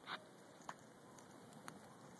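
Jiffy Pop popcorn popping over a campfire: a few faint, sharp single pops about a second apart.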